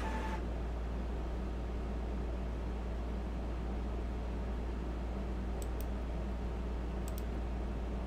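Steady low electrical hum and room noise, with faint computer-mouse clicks twice in the second half.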